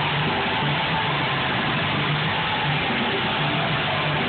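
Rock entrance theme with electric guitar and a pulsing bass line, played loud over the arena PA and recorded from the stands, so it comes out as a dense, smeared wash.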